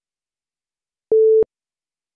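Countdown leader beep: a single short steady tone, about a third of a second long, sounding about a second in, timed to the number 2 of the countdown.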